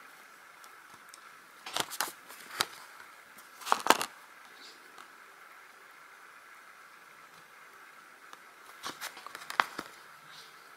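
Handling of a stitched plastic embroidery canvas: a few short clicks and crinkles of fingers and a needle with thread working against the plastic, in small groups about two and four seconds in and again near the end, over a faint steady hiss.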